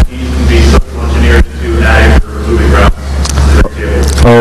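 Audience member's question picked up faintly and off-microphone, under a loud low hum that swells and drops in step with the phrases.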